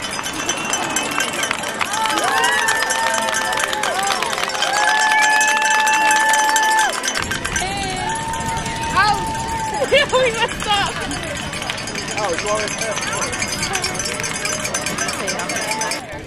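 A song with a voice singing long held notes, with low outdoor rumble coming in about halfway through.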